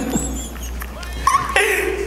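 Men laughing in high-pitched, squealing bursts that ease off briefly, then pick up again near the end.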